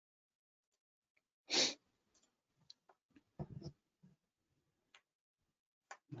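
A person's short, sharp breath or sniff close to a microphone about a second and a half in, followed by a few fainter mouth noises and small ticks around the middle; between them the sound cuts to dead silence.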